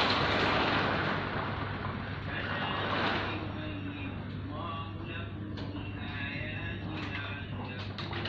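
Strong wind of an arriving sandstorm (haboob) with rain beginning to fall, a dense rushing noise that is loudest at the start, swells again about three seconds in, then eases.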